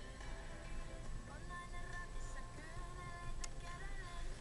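Pop music with a sung melody playing from the car radio inside the cabin, over the low steady rumble of the car driving on a snowy road.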